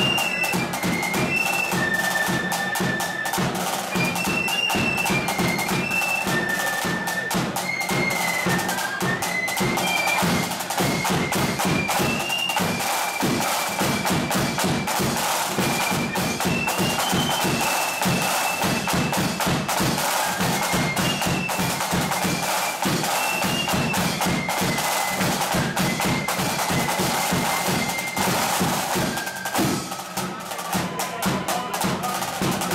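A flute band playing a march: massed high flutes carry the melody over snare drums and a bass drum. The tune stops about a second before the end.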